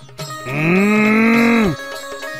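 One long cow moo of about a second and a half, holding its pitch and then dropping off as it ends, over soft background music.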